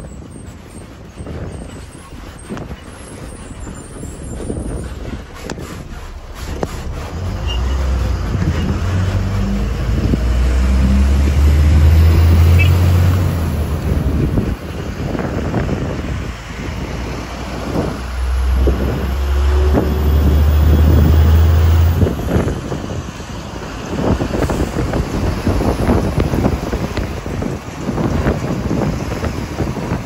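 Riding at the open window of a moving city bus: steady road and wind noise, with a deep engine rumble that swells loud twice, about a quarter of the way in and again past the middle.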